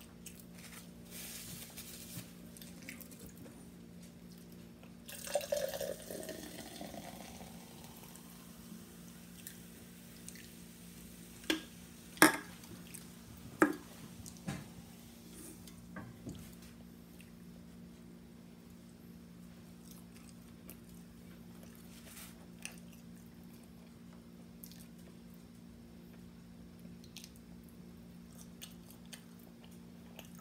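Close-miked eating sounds: quiet chewing with wet mouth clicks and smacks, a few sharp smacks a little before halfway, over a steady low hum.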